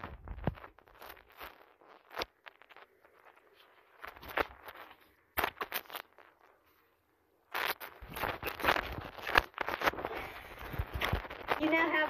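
Handling noise of a handheld phone camera: rustling, scraping and sharp knocks as it is grabbed and moved about, with about a second of near silence a little past the middle.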